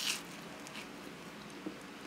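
A short crunch of a bite into toast, then faint chewing.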